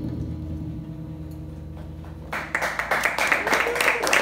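The last notes of a small jazz combo, with the upright bass low in the sound, ring out and fade. A little over halfway through, audience applause and clapping break out and continue.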